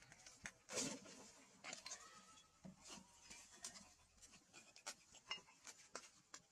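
Near silence with faint, scattered clicks and rustles, and one brief louder rustle about a second in.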